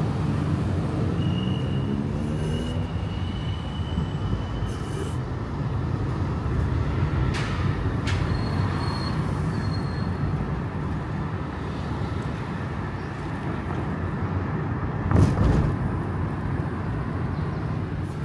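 Steady low road and engine rumble inside a moving car's cabin. One brief, louder knock comes about fifteen seconds in, and faint thin high tones sound twice.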